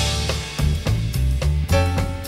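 Live jazz band playing: a crashed cymbal rings over the drum kit while upright bass notes pulse low underneath, the full band having just come in after a drum passage.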